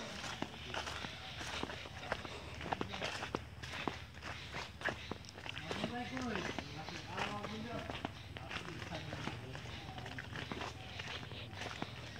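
Footsteps of a person walking along a forest trail over dry leaf litter and dirt, irregular steps throughout.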